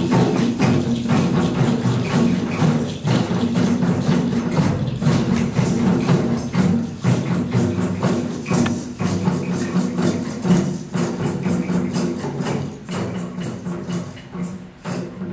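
A drum circle playing together: djembes, frame drums and a large bass drum in a fast, dense rhythm, with tambourine jingles on top. The playing grows quieter near the end as the group follows the leader's hush signal.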